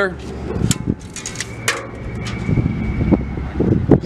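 Clicks and taps of metal being handled, one followed by a steady high ringing tone for about a second and a half, over a low rumble.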